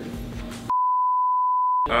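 A single electronic beep: one pure, steady, high tone lasting just over a second, starting about two-thirds of a second in and cutting off suddenly, like a censor bleep.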